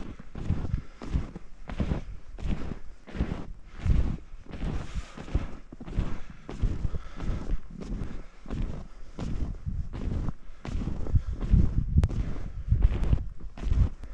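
Snowshoe footsteps in snow, a steady walking rhythm of about two steps a second, with wind rumbling on the microphone.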